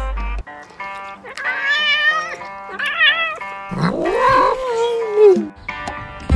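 Cat meowing three times over background music: two short, wavering, higher calls, then a longer, lower meow that rises and falls.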